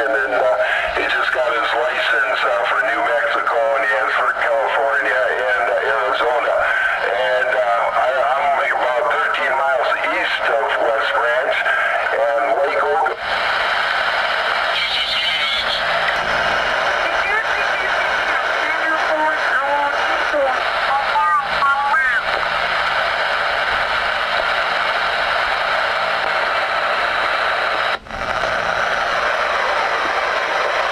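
Ranger RCI-69FFC4 10-meter transceiver's speaker receiving single-sideband voice signals while the frequency is tuned: garbled, mistuned speech for the first dozen seconds, then a steady hiss of band noise with snatches of warbling voices. There is a brief dropout near the end.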